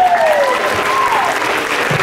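Audience applauding and cheering, with a long whoop from one voice that slides down in pitch and dies out about half a second in, and another shorter one just after a second in.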